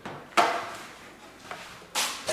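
Handling noise from a foam-and-wood RC warbird model being fitted together on a sheet-metal workbench: a sharp knock about a third of a second in that fades out over about a second, then a lighter knock about a second and a half in.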